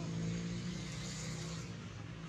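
Steady low hum of a motor vehicle engine running.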